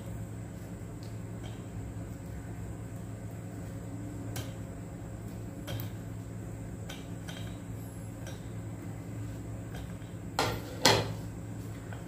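Light, occasional clinks and taps of a utensil against a stainless steel pot as fried gulab jamuns are put into sugar syrup, with two louder knocks near the end. A low steady hum runs underneath.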